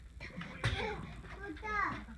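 Children's voices: kids talking and calling out, with a high child's voice rising and falling near the end.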